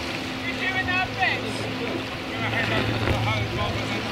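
Waterside ambience: wind on the microphone and water lapping, with faint voices carrying across the water.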